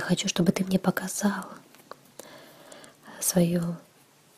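Speech only: a voice speaking in a short phrase, a pause, then a second short phrase.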